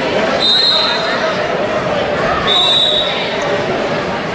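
A referee's whistle blows two short, steady blasts about two seconds apart, the second a little longer, over background crowd chatter in a gym.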